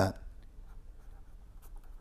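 A marker pen writing on paper, faint scratching strokes as a word is written out.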